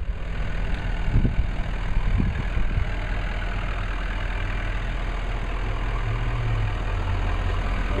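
Ford 6.7-liter Power Stroke V8 turbodiesel idling steadily.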